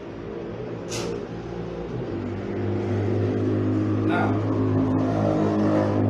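A steady low engine hum that swells louder about two and a half seconds in, with a few brief sharp noises over it.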